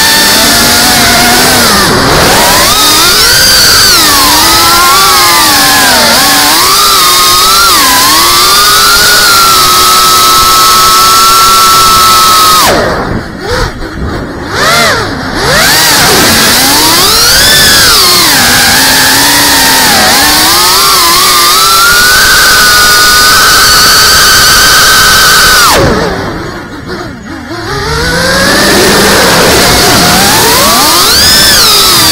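FPV quadcopter's electric motors and propellers whining, the pitch rising and falling with the throttle and holding steady in level flight. The whine drops away sharply twice, about 13 s in and again about 26 s in, as the throttle is cut, then comes back.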